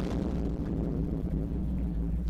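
Deep, steady rumbling drone from the closing bars of a dramatic video soundtrack, with its weight low in the bass.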